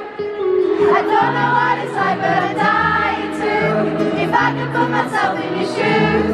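Live concert music heard from the arena floor: acoustic guitar and band with many voices singing together, the crowd singing along, and low bass notes coming in about a second in.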